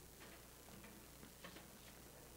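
Near silence with a few faint, scattered clicks and knocks as percussionists move about the stage and handle their instruments and gear between pieces.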